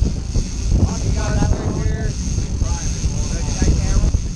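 Steady low rumble of wind on the microphone and the sportfishing boat's engines, with crew voices calling out about a second in and again near the three-second mark.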